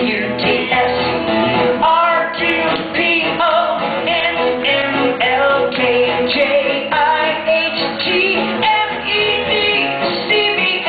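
A singer's voice over loud backing music, the sung line continuing the alphabet backwards.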